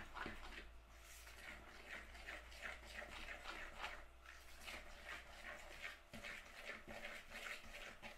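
A fork stirring flour and melted butter in a plastic mixing bowl: faint, repeated scraping strokes, about two a second.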